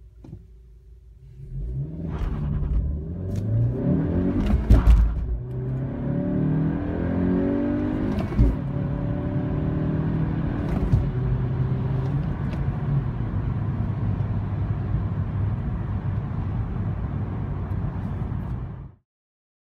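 2017 Honda Civic Hatchback Sport's 1.5-litre turbocharged four-cylinder, heard from inside the cabin, idling and then launching in a full-throttle 0-60 mph run. About a second and a half in it revs up, its pitch climbing through the gears of the six-speed manual with short knocks at the gear changes. From about ten seconds in it settles to a steady cruise at 60 mph.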